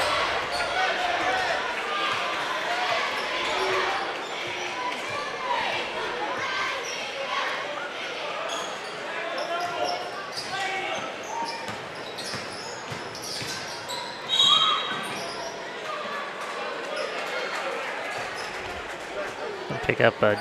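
Basketball dribbled on a hardwood gym floor over steady crowd chatter in a large, echoing gym. About two-thirds of the way through a short, shrill referee's whistle sounds, stopping play for a foul.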